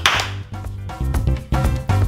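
A sharp clap of hands with a short fading tail, followed about a second in by background music with a steady beat.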